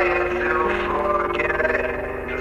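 A song with male vocals holding a long sung note over a melodic instrumental backing; the held line fades out near the end.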